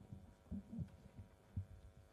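Faint, irregular low thumps and knocks, about five in two seconds.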